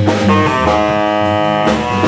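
Small jazz combo playing live: a guitar solo over bass and drums, with the horns resting. The guitar holds one note for about a second in the middle.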